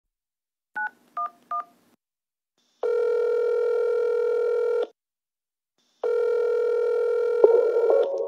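Telephone sound effect in a song's intro: three short touch-tone keypad beeps dialing 9-1-1, then two long ringback tones as the emergency call rings through. A click near the end as the line is answered.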